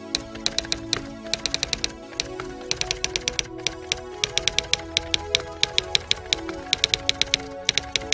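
Typewriter key strikes in short runs of rapid clicks, over background music with steady held notes.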